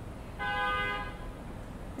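A single short vehicle horn toot, steady in pitch and lasting about half a second.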